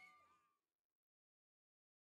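The last sung note of the song fades out in the first half second, with a brief falling slide in pitch, and then there is near silence.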